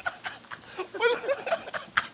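Two young men laughing together in short, choppy bursts of chuckling.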